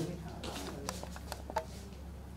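A quick scatter of camera shutter clicks, about seven sharp clicks in a little over a second, over a steady low hum.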